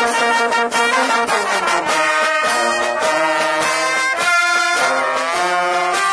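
Brass fanfare band playing a tune: trumpets, trombones, saxophone and tuba over a snare drum and clashed hand cymbals keeping a steady beat.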